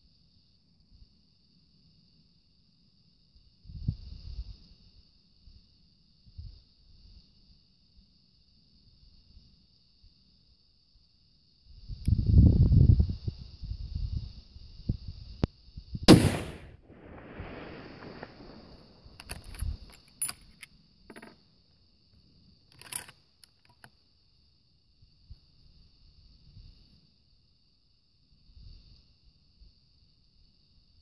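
A single long-range rifle shot about halfway through, followed by a few seconds of echo rolling back off the hills. A low rumble of wind or handling comes just before it, a few small sharp clicks follow, and a faint steady high-pitched whine runs underneath throughout.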